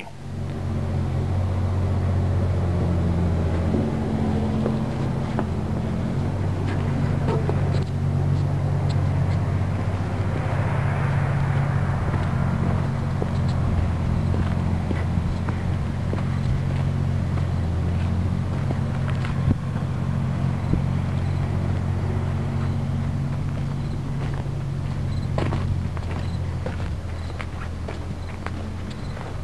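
A loud, steady low engine drone runs throughout, with a few scattered clicks and knocks over it.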